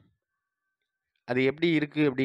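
A voice speaking, broken by about a second of dead silence before the talk resumes.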